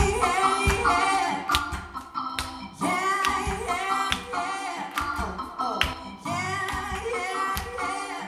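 Live band music: a woman singing over keyboard, bass guitar and drums, with hand claps on the beat.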